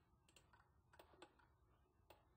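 Near silence with a handful of faint, sharp clicks from a computer's input devices being operated.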